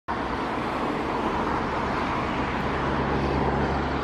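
Steady outdoor background noise: a low rumble and hiss with no distinct events, and a faint low hum joining about halfway through.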